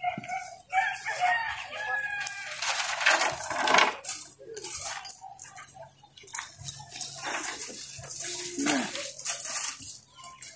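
A metal chain and fastening clinking and rattling in repeated short jingles as a gate is worked open by hand, with a few short pitched calls in the first couple of seconds.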